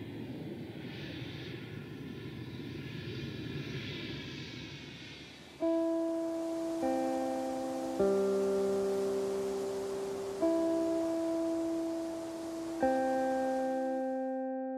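Background music: a soft swelling whoosh for the first five seconds or so, then slow, sustained keyboard chords struck every second or two, each ringing on and fading.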